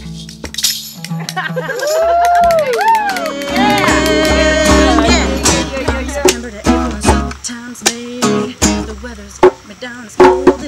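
Two acoustic guitars strummed together, with a voice singing a wordless melody that slides up and down in pitch through the first half.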